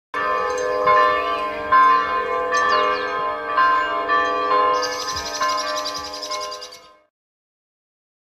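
Church bells ringing, a new strike roughly every second, with birds chirping over them, the chirping busiest in the last couple of seconds; the sound fades out about seven seconds in.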